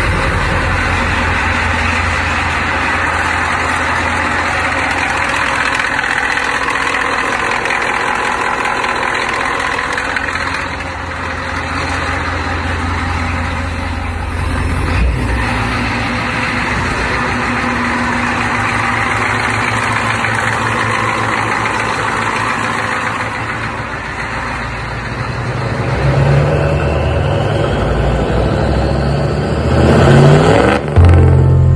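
Ford 6.9L V8 diesel with a Banks Sidewinder turbo idling steadily after being started. It is heard from inside the cab, with one short knock about halfway through. Over the last few seconds the sound changes and grows louder.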